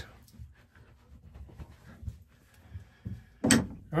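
Faint rubbing and handling noises as a towel is dabbed over the face, then one short, sharp knock about three and a half seconds in.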